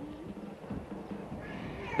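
Faint animal calls over background ambience.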